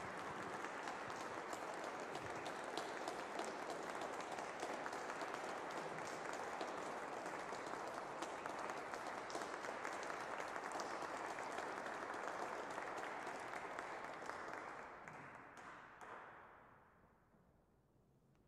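An audience applauding steadily, the clapping dying away near the end.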